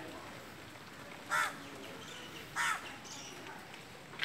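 A bird calling twice outdoors: two short, loud calls about a second and a quarter apart, over faint background ambience.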